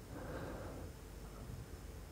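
Faint, steady low background noise with no distinct event: the room tone of a voice recording between spoken phrases.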